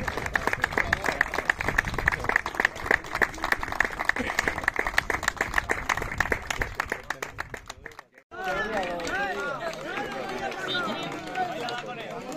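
Percussion for a traditional folk dance: a fast, dense run of clicks with a drum underneath, cut off sharply about eight seconds in. People's voices follow.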